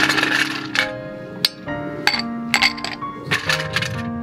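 Background music with held notes, over several sharp glassy clinks like ice cubes dropping into a glass as a highball is made.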